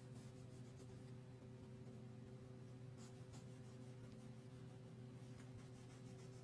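Faint scratching of a crayon rubbed on paper in short repeated strokes, easing off for about two seconds after the first second and then resuming, over a steady low hum.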